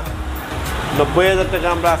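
Talking with background music. The voice picks up about a second in, over a steady low rumble.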